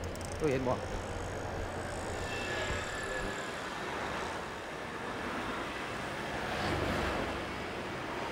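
Steady road noise from traffic on a highway, with a vehicle passing and swelling about seven seconds in.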